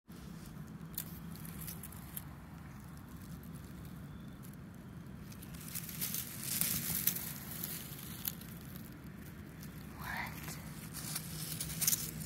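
Scattered crackles and rustles over a steady low hum, with a louder, denser stretch of crackling about six seconds in.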